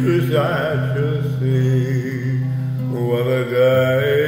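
Slow gospel hymn: a man's voice drawing out held, wavering notes over sustained instrumental accompaniment.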